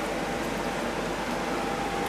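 Steady, even hiss of background noise with a faint constant tone and a low hum through it, like a fan or air conditioner running.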